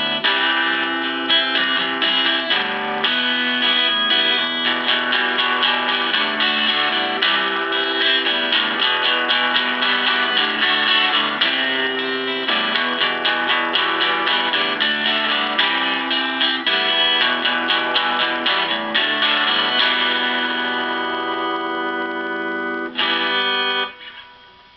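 Vintage Yamaha Compass Series acoustic-electric guitar strummed in basic chords through a Fender Vaporizer amp running clean with no effects. Near the end a chord is left to ring for a few seconds, then one last strum cuts off suddenly.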